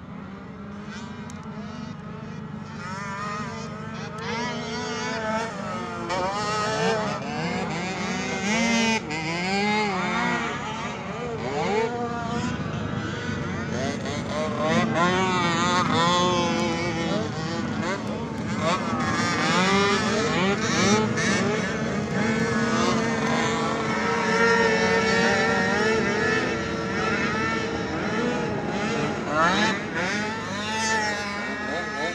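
Small engine of a mini youth ATV revving up and down over and over as it races around a dirt track, its pitch rising on the throttle and falling off between, getting louder a few seconds in.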